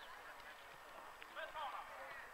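Faint, distant shouted calls from players on the pitch, one about a second and a half in, over quiet open-air background.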